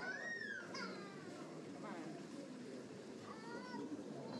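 Background chatter of visitors, with a high-pitched voice calling out in a long rise-and-fall in the first second, followed by shorter falling calls and a few more brief calls near the end.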